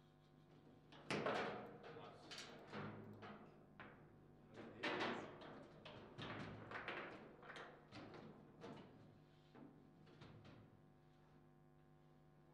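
Table football play: a run of sharp knocks and clacks as the ball is struck by the rod-mounted plastic figures and bangs around the table. The loudest hits come about a second in and again near five seconds, and the play goes quiet for the last couple of seconds.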